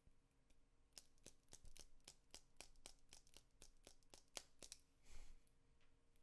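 Near silence broken by a run of faint clicks, about three or four a second, for nearly four seconds, then a short soft rush of noise near the end.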